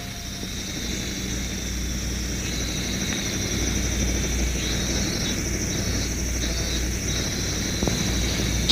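Outdoor ambience of insects buzzing in a steady high pitch that pulses on and off in the second half, over a steady low drone.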